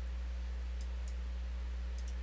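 Steady low hum with a faint hiss, broken by a few faint, short mouse clicks.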